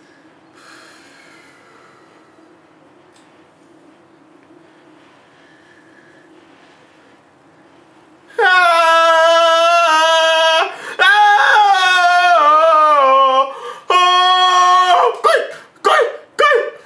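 Quiet room tone for about eight seconds, then a voice sounding long, loud, held vocal notes: the first steady in pitch, the next sliding slowly downward, followed by a few shorter ones.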